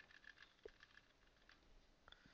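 Near silence, with a few faint, sparse computer-keyboard keystrokes as text is deleted in a code editor.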